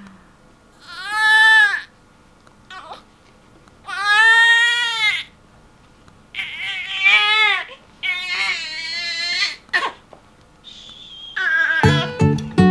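Newborn baby crying in four separate cries of about a second each, with short pauses between. Guitar music starts near the end.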